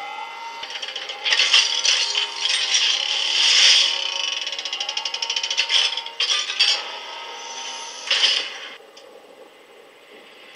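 Sound effects from an animated show's soundtrack: metallic rattling, clinking and scraping over a hiss, with a run of fast ticking in the middle and faint steady tones beneath.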